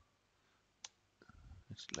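A single sharp click about a second in, from the computer as the code completion is accepted. Otherwise near silence, until a man's voice starts near the end.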